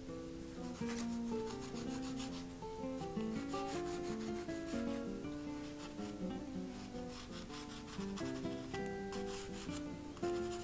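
Soft pastel stick rubbing and scraping across pastel paper in quick repeated strokes, with fingers smudging the pigment, over soft background music with a plucked melody.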